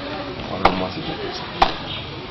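Two sharp clicks about a second apart, over faint low talk.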